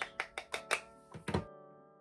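A quick run of sharp clicks and taps from makeup items being handled as blush is picked up. Quiet background music with held notes takes over after about a second and a half.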